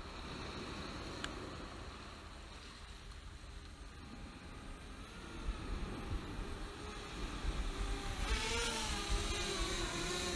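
DJI Spark drone's propellers buzzing over a steady background hiss, growing louder through the second half with a wavering pitch as the drone flies low toward the microphone.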